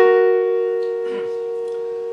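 Piano playing an F-sharp and A-sharp together, struck once right at the start and held, ringing on and slowly fading.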